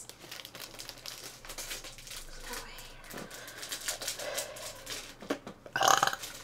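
Packaging being handled: irregular crinkling and clicking of a wrapped snack package.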